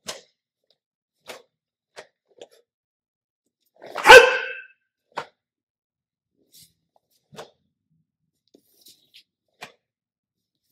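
A single loud martial-arts shout (kihap), about half a second long, about four seconds in. Faint scattered taps and thuds of bare feet and staff on the mats come before and after it.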